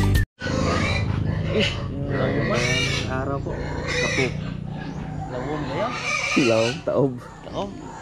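Music cuts off abruptly just after the start, followed by animal calls that slide up and down in pitch, mixed with voices over a steady low hum.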